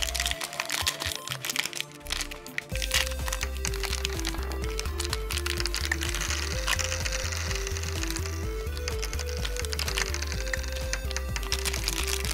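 Crinkling of a thin clear plastic candy bag being pulled open and handled, with small hard candies clicking, over background music whose steady bass beat and simple melody come in about three seconds in.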